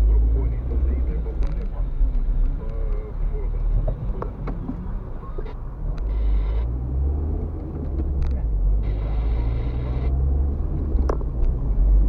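Low rumble of a car's engine and tyres heard from inside the cabin as the car drives through town, with scattered small clicks and rattles.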